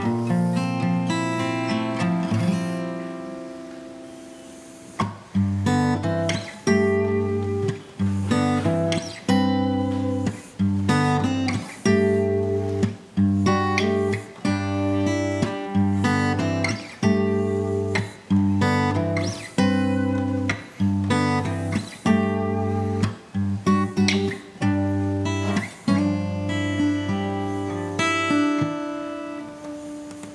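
Steel-string acoustic guitar played solo, picked and strummed chords ringing. A chord rings out and fades over the first few seconds, then a steady rhythm of chords picks up about five seconds in and runs on, easing off near the end.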